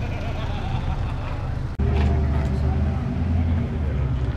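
Low, steady engine rumble, as of a car idling, under background chatter of people. The sound breaks off for an instant just under two seconds in and comes back with the rumble louder.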